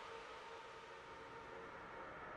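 Very faint steady hiss with a low, even hum.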